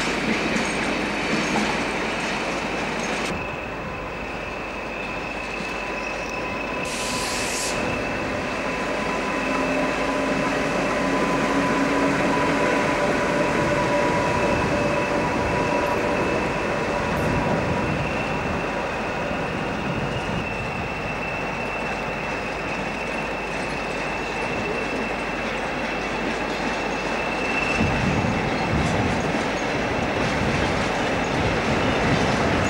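British Rail locomotives moving over the tracks: steady running noise with a thin high tone through it. There is a short hiss about seven seconds in, and the sound changes abruptly a few times.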